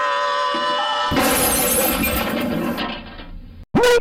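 A glass-shattering crash sound effect about a second in, over a long held note that fades out near the end.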